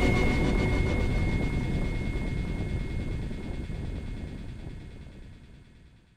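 Outro of a psytrance track: a low rumbling noise texture with a thin steady high tone, the highs dropping away first as the whole fades out to nothing near the end.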